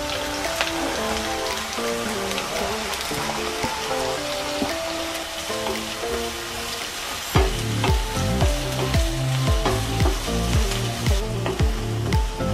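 Sliced onions sizzling in hot oil in a pan as they are tipped in and stirred with a wooden spatula. Background music plays over it, with a steady beat coming in a bit past halfway.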